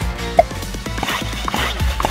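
Upbeat background music with a steady beat and a sharp click-like hit about half a second in.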